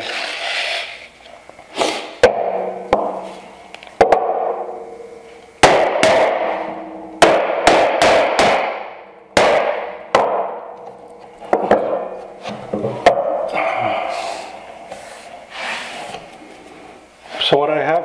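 Iron holdfasts being knocked loose and lifted off a wooden workbench, along with wooden tools and a board being set down. The result is about ten sharp knocks at irregular intervals, some ringing briefly.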